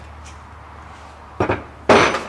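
A steel engine camshaft being set down on a wooden workbench among other valve-train parts: two short knocks about half a second apart, near the end.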